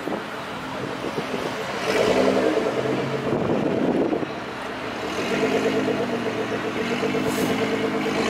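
A car engine and exhaust running close by. It swells louder twice with light revs, about two seconds in and again from about five seconds in, with a steady pulsing note between.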